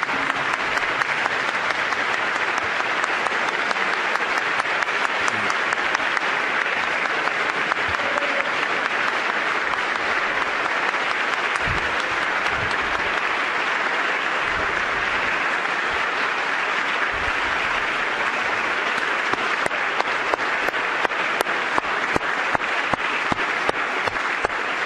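Long, steady applause from a large audience, with individual claps standing out more toward the end.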